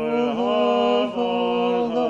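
Solo male voice singing liturgical chant, holding a few long notes that step to a new pitch about a second in and again near the end.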